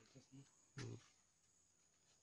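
Near silence, broken by a few faint murmured voice sounds and one short, louder vocal sound just under a second in.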